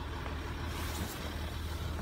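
Ford Territory Titanium's engine idling steadily, a low even hum heard from inside the cabin.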